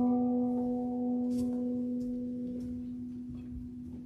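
A sustained keyboard chord of several notes ringing out and slowly fading: the final chord of a piece of music.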